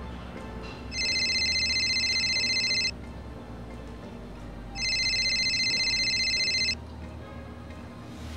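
Telephone ringing: two electronic rings, each about two seconds long with about two seconds between them, over faint background music.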